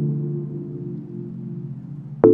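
Background music: a held chord that slowly fades away, with no new note struck.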